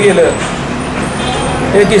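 A man speaking breaks off for about a second and a half, leaving a steady background noise, then resumes near the end.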